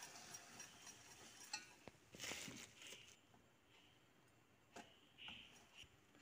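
A few faint clinks and scrapes of a wire whisk against a stainless steel pot as flour is stirred into melted butter to make a roux.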